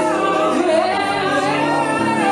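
A man singing live with an acoustic guitar accompanying him, his voice sliding between held notes over the sustained guitar chords.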